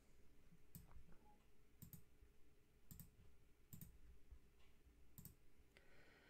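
Faint computer mouse clicks, five of them about a second apart, some doubled, in an otherwise near-silent room.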